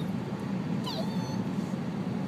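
Steady car-cabin road rumble from a moving car, with one brief high-pitched squeal about a second in that rises and then holds.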